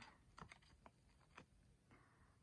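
Near silence with about five faint, short clicks and rustles as hands handle a cap and its paper hang tags.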